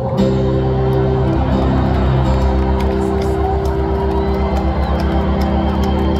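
Electric stage keyboard holding sustained chords, the low notes pulsing quickly from about halfway in, with an arena crowd cheering faintly underneath.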